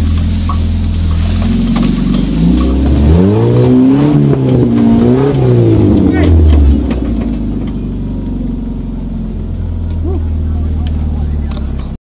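Off-road Jeep's engine heard from inside the open cab, running steadily, then revving up hard in two rising and falling swells, and settling back to a lower steady drone about seven seconds in.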